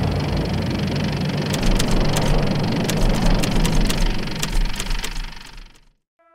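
A steady, heavy low rumble with scattered sharp crackles, fading out over the last second.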